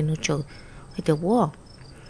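Faint crickets chirping steadily in the background, under two short phrases of speech.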